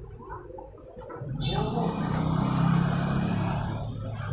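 A road vehicle passing by: its engine hum and road noise build about a second in, peak in the middle and fade toward the end.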